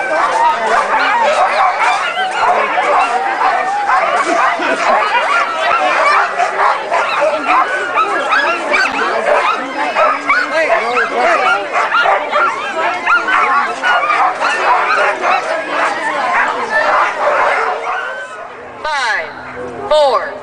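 A team of harnessed sled dogs barking and yelping together in a dense, overlapping chorus, the typical excited clamour of sled dogs waiting to be let go at a race start. Crowd voices run underneath. The sound drops away about two seconds before the end.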